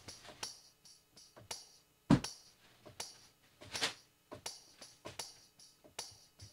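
Sampled percussion from Kontakt 7's Studio Drums kit playing back at low level: a string of short, unevenly spaced strikes, mostly bright tambourine hits, with one fuller, louder hit about two seconds in.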